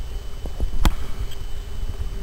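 Low, rough rumble of microphone noise, with one sharp click a little under a second in.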